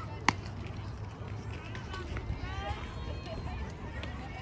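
A single sharp smack of a softball striking something about a third of a second in, the loudest sound by far, over outdoor noise; faint shouting voices follow from players and spectators.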